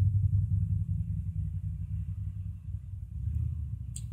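A low, steady rumble with no voice, easing off a little in the second half.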